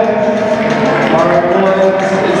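Recorded song with a singing voice playing over loudspeakers, steady and loud throughout.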